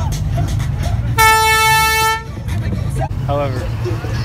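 A vehicle horn sounds one steady, single-pitched blast of about a second.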